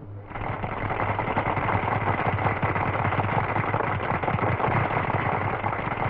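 Crowd applauding: dense, steady clapping that starts just after the beginning and keeps up throughout.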